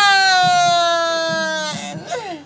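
A man's long held vocal cry, a single sustained note that slides slowly down in pitch for nearly two seconds and breaks off near the end.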